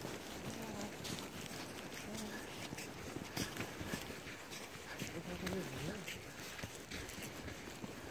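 Footsteps crunching in thin snow, about one or two steps a second, uneven. A faint voice murmurs briefly near the start and again around the middle.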